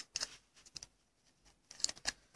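A few light plastic clicks and rustles as a trading card is slid into a rigid clear plastic toploader, the loudest cluster near the end.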